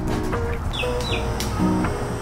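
Background music over a steady ambient hiss and rumble, with two short, high, falling bird chirps close together about a second in.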